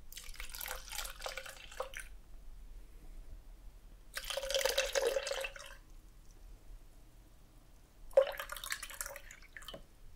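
Apple juice poured from a carton into a plastic cup in three pours: one about two seconds long at the start, a louder one around four to six seconds in, and a shorter one near the end.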